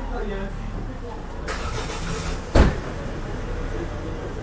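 A vehicle engine running steadily, with faint voices over it, a brief rush of hiss in the middle and one sharp thump about two and a half seconds in.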